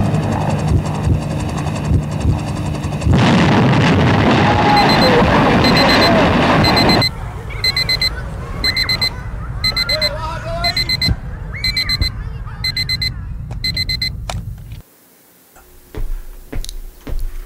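Electronic alarm clock beeping in quick clusters of high beeps, repeating about every half second, until it stops near the end. Music with a loud rushing swell runs under its start.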